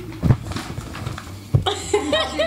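Sheets of paper rustling as they are picked up and raised, with two dull handling thumps, one just after the start and one about a second and a half in.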